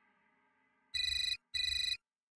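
Mobile phone ringtone: two identical electronic tone bursts about a second in, each about half a second long with a short gap between them, repeating as an incoming-call ring.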